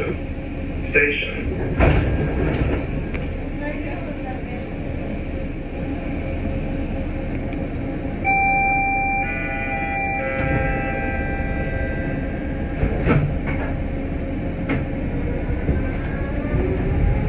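People Mover car standing at a station with a steady low hum. About eight seconds in, a one-second electronic beep sounds, followed by a run of layered chime tones, as a door-closing warning. A couple of sharp knocks follow near the thirteen-second mark.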